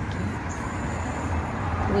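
Steady low rumble of road traffic passing close by.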